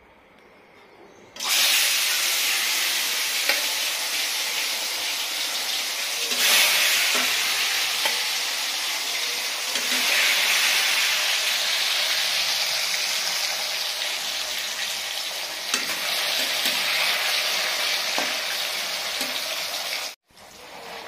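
Turmeric-coated whole fish frying in hot oil in a wok-style pan. The sizzle starts suddenly about a second and a half in as the fish go into the oil, then runs loud and steady, swelling louder a couple of times, with a few light clicks.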